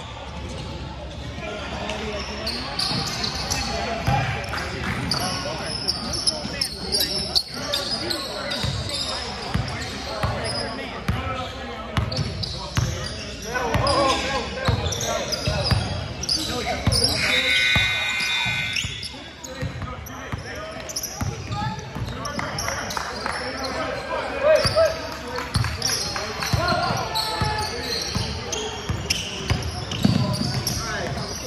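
A basketball dribbled and bouncing on a hardwood gym floor during play, with indistinct voices of players and onlookers. A brief high squeal comes a little past halfway.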